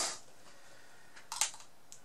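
Plastic handling: a brief rustle at the start, then a couple of sharp clicks about one and a half seconds in, as a clear plastic cup is picked up in gloved hands.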